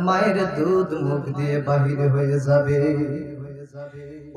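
A man's voice intoning a sermon in a sung, melodic style into a microphone, holding long notes that step up and down in pitch, then trailing off near the end.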